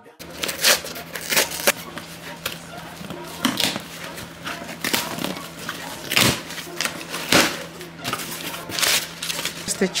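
Packing tape being peeled and torn off a cardboard parcel and the box flaps pulled open: an irregular series of sharp scratchy rips and cardboard scrapes.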